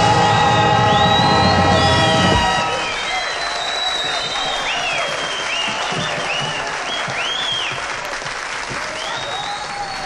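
A live band's held closing chord cuts off about two and a half seconds in, and an audience's applause takes over, with whistles rising and falling above the clapping.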